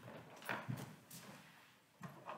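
A few faint footsteps: short, scattered knocks in the first second or so.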